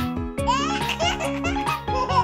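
A baby giggling and laughing over bright children's music, the laughter starting about half a second in.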